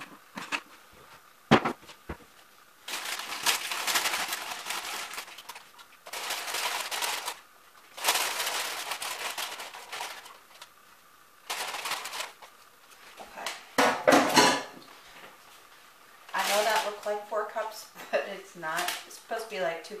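A plastic bag of spinach crinkling in several separate bursts of a second or two as it is handled at the stove, after a couple of sharp knocks in the first two seconds. A woman's voice comes in near the end.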